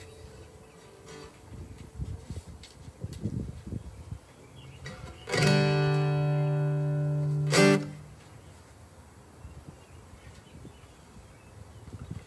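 Guitars on an outdoor PA: a few soft, scattered plucks, then a loud, steady held note for about two seconds that cuts off abruptly.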